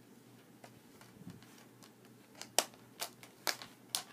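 A few sharp clicks and taps from a steelbook Blu-ray case being handled and opened. The four loudest come in the second half, about half a second apart.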